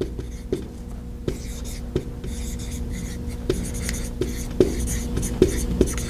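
Dry-erase marker writing on a whiteboard: short, irregular squeaks and scratches as the letters are stroked.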